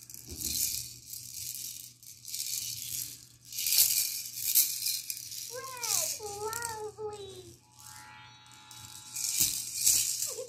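Yellow plastic baby rattle shaken by hand in several bursts of rattling, with a short pause about halfway through and near the end. Partway through, a baby's brief wavering vocalizing, followed by a short steady electronic tone.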